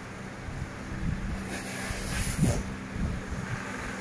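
Low, uneven rumble of a handheld phone being moved and handled against its microphone, with a brief faint rustle about halfway through.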